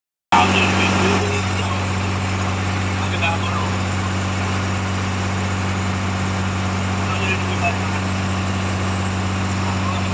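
Fishing boat's inboard engine running at a steady speed under way, a constant low drone, with water rushing past the hull.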